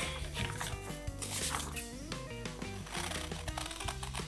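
Background music with steady, stepping notes.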